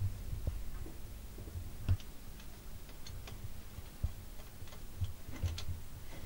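Low rumble with scattered light knocks and clicks of equipment being handled, such as a camera or a microphone stand. No music or singing.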